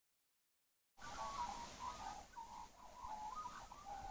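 Silence for about a second, then birds calling in short chirps and trills over faint outdoor background noise.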